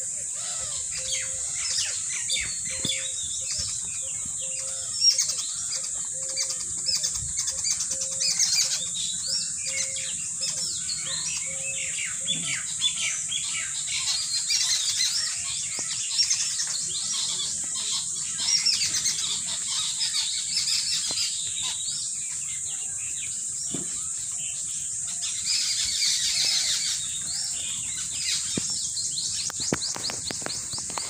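Many small birds chirping and calling continuously, over a steady high-pitched hiss. A low short note repeats about once a second for the first twelve seconds, then stops.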